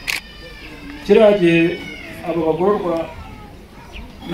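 A man speaking Kinyarwanda into a handheld microphone in short phrases with pauses. Right at the start there is a click, then a thin, high-pitched, falling cry-like sound lasting about a second, partly overlapping his words.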